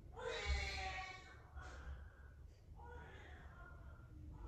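A newborn baby crying in the background: one louder wailing cry about a second long near the start, followed by two fainter cries.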